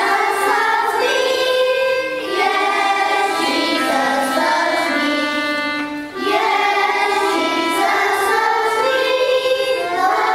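A choir singing, with a short break between phrases about six seconds in.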